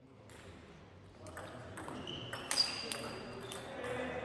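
Table tennis balls knocking sharply off bats and tables in a large hall, a string of separate clicks with the loudest about halfway through, over a murmur of voices. The sound fades in over the first second.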